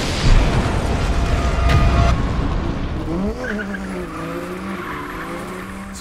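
Explosion sound effect: a sudden blast followed by a long rumble that slowly dies away, with a low wavering tone coming in about halfway through.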